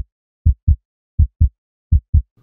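Heartbeat sound effect of a racing pulse: pairs of short, deep lub-dub thumps repeating a little faster than once a second, with dead silence between the beats.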